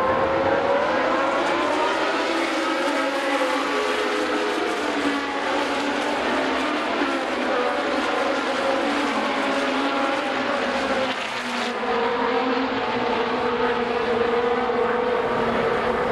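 Open-wheel race car engines running at high revs, several at once, a steady high-pitched drone whose pitch wavers as the cars go round the circuit.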